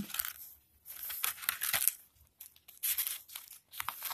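Paper and cardstock pages of a handmade junk journal rustling and crinkling as they are handled and turned, in several short rustles.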